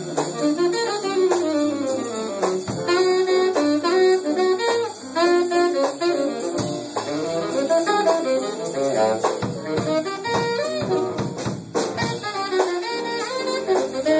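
Small jazz band playing live, its saxophones carrying a moving melody line over guitar and drums.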